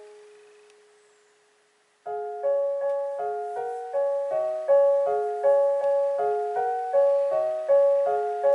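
Piano: a held chord dies away over the first two seconds, then a gentle broken-chord accompaniment begins about two seconds in, about three notes a second in a repeating pattern.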